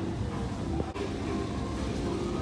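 Steady low rumbling background noise of a supermarket aisle, with a few faint tones running through it.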